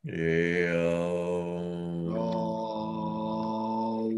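A long chanted Om, the final Om of a guided meditation, held on a steady pitch. It starts suddenly and shifts tone partway through.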